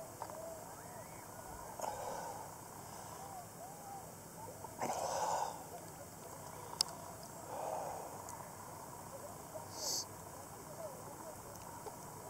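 Lake water gurgling and lapping right at a camera held at the surface of calm water, with small bubbly pops throughout. A few short rushing bursts come about five, eight and ten seconds in.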